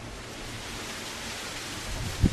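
Steady, even background hiss with no distinct events: room and recording noise between spoken phrases.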